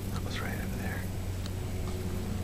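A brief whisper lasting under a second, starting about a third of a second in, over a steady low hum.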